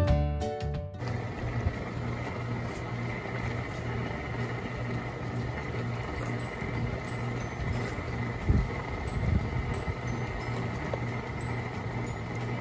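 Background music that stops about a second in, leaving a steady low hum and hiss with a faint high tone.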